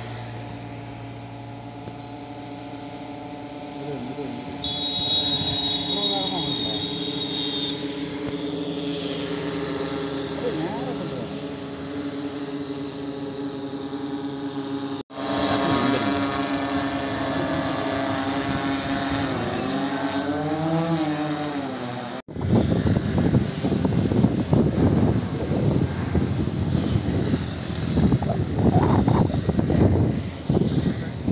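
Multirotor crop-spraying drone's rotors humming steadily as it hovers, the pitch swooping up and down for a few seconds as it manoeuvres. Near the end the hum gives way to rough, gusty rushing on the microphone.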